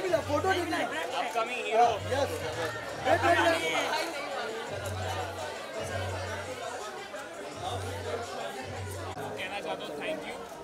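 Several people talking over one another, with background music whose deep bass note repeats in short pulses.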